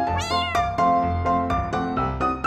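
A single cat meow, rising then falling in pitch for about half a second just after the start, over light piano background music.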